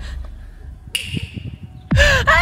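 Low wind rumble and handling noise on a handheld camera's microphone, fading after the start, with a few light taps and a short high ping about a second in.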